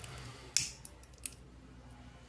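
Handheld lighter being struck: one sharp click about half a second in, followed by a few faint ticks.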